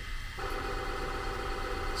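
Bambu Lab P1P 3D printer running its first calibration: a steady machine hum made of several steady tones, which grows fuller about half a second in.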